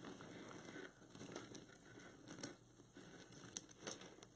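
Faint rustling and crinkling of plastic deco mesh being pulled and scrunched into a poof by hand, with a few light ticks.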